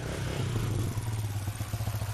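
Small motorcycle engine running steadily at low speed, getting gradually louder.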